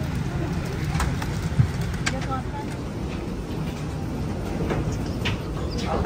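Airliner cabin during deboarding: a steady low rumble with murmured passenger voices and scattered clicks and knocks of luggage handling, the loudest a single thump about one and a half seconds in.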